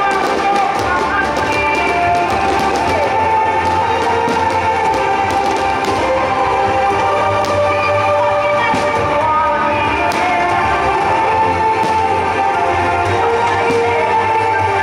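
Music playing loud over loudspeakers, with scattered sharp pops and crackles of aerial fireworks throughout.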